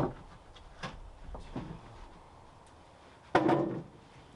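Sawn cedar boards knocking against each other and the sawmill bed as they are handled: a few light wooden clacks, then a louder clatter about three seconds in.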